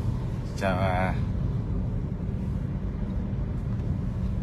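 Steady low rumble of a Toyota Vios's engine and tyres, heard from inside the cabin of the moving car.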